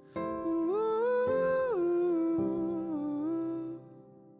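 The end of a pop song soundtrack: one voice hums a wordless melody, gliding up to a held high note about a second in, then falling back and fading out near the end, over soft accompaniment.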